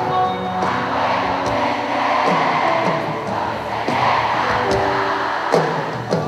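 Live pop band playing on stage, with keyboards and bass guitar, mixed with the noise of a concert crowd.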